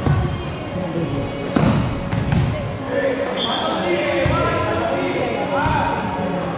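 Volleyball hits ring out in an echoing gym hall: one sharp smack at the start and another about a second and a half in. From about halfway, players shout and call out as the rally ends in a point.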